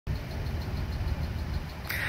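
A pickup truck engine idling, a steady low rumble.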